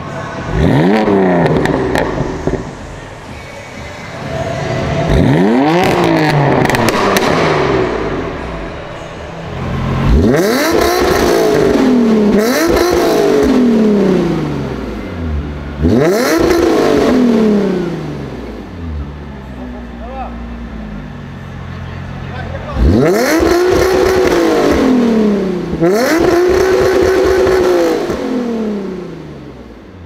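Sports car engines revved hard at a standstill, about seven times: each rev climbs sharply in pitch and then falls away as the throttle is released. The first car is a BMW M4; the later revs come from a Nissan 350Z's V6 through a quad-tip exhaust.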